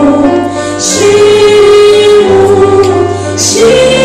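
A woman singing lead through a microphone with a live ensemble and backing choir, in long held notes that move to a new pitch about every second.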